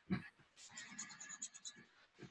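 Faint scratchy scrubbing of a paintbrush worked back and forth over watercolour paper, blending green paint into a flat, even colour.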